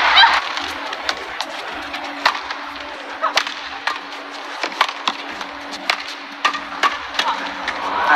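Badminton rackets striking the shuttlecock back and forth in a fast doubles rally: a string of sharp thwacks at irregular intervals, over a steady low hum of arena ambience.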